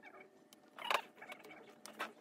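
Paper sheets being placed and pressed down by hand on a blanket: light scratchy rustling and brushing, with a louder brush of paper about a second in.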